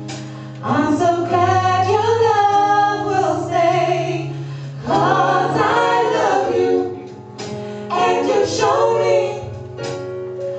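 Female vocal group of five singing a slow song in harmony into microphones. Phrases begin about a second in, about five seconds in and about eight seconds in, over steady sustained low notes.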